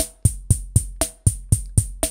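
Synthesized electronic drum machine beat from Reason 5's Kong Drum Designer, triggered by a Redrum pattern: a steady motorik groove of bass drum and hi-hat hits about four a second, with a brighter accented hit about once a second.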